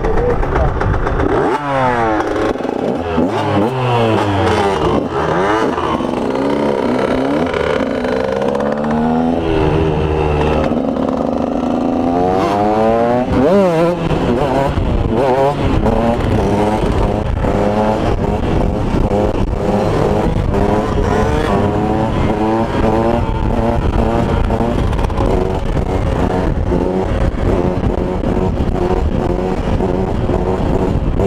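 KTM supermoto motorcycle engine revving up and down with rising and falling pitch as the bike pulls away and lifts its front wheel. From about halfway on it is held at high revs with small rises and dips as the bike rides along on its back wheel in a wheelie.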